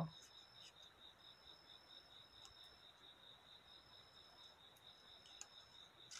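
Near silence, with a faint steady high-pitched trill and a few faint snips of small scissors cutting folded paper, about two and a half seconds in and again near the end.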